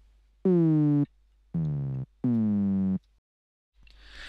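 Native Instruments Massive software synth patch of stacked sine-type oscillators, pitched down two octaves with an envelope modulating their pitch, played as three test notes. Each note opens with a quick downward pitch drop, the start of a synthesized kick drum, then holds a low steady tone and cuts off abruptly.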